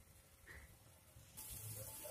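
Near silence: room tone, with a faint steady hiss coming in about one and a half seconds in.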